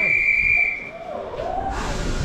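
A single high, steady whistle note that stops about a second in.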